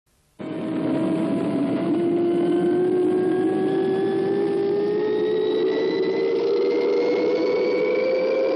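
Fireball XL5 rocket launch sound effect: a loud roar that starts suddenly just after the start, with a whine that rises slowly and steadily in pitch.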